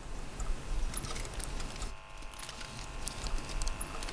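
Lo-fi background noise bed made from home-recorded Foley samples: a steady low hum and hiss from a droplet-free stretch of a water-droplet recording, with a faint electric-razor drone and scattered small clicks.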